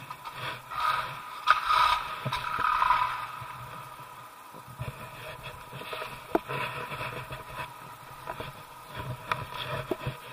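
Irregular scraping and clattering of movement over an icy snow floor close to the microphone, loudest in the first few seconds, with sharp clicks scattered through. A faint steady hum runs underneath.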